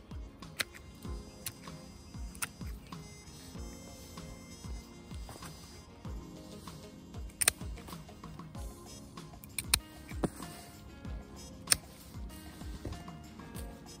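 Background music, with about half a dozen sharp snips of hand pruning shears cutting thin hydrangea stems.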